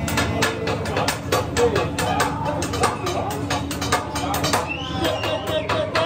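Rapid, irregular clicking and clacking, several sharp strokes a second, over a murmur of background chatter.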